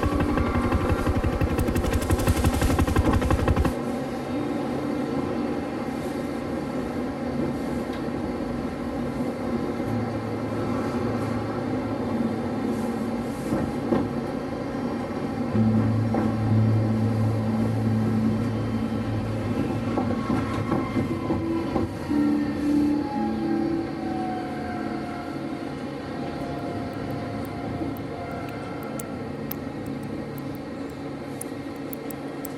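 Soft background music with held notes over the sound of a tram riding. A low rumble fills the first few seconds and stops abruptly, and later an electric motor whine falls in pitch as the tram slows.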